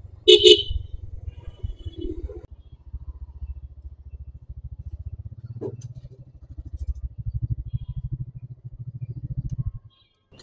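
TVS Raider 125's single-cylinder engine running at low speed under the rider, its exhaust beats louder from about seven seconds in, cutting off suddenly near the end. A vehicle horn honks once, loudly, about half a second in.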